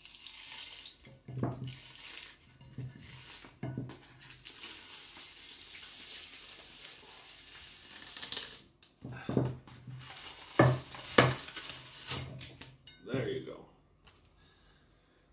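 Old glued emery paper being peeled off a metal grinding disc: a long rasping tear through the middle, with a few sharp knocks around it.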